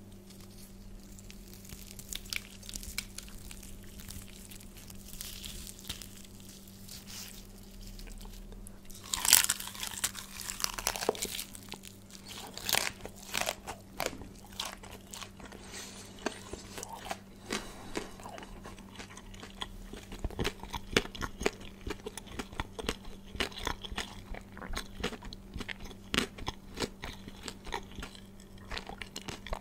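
Close-miked crunching and chewing of crispy fried chicken: bites crackling through the fried coating, loudest a little over nine seconds in, followed by a run of short, sharp crunches.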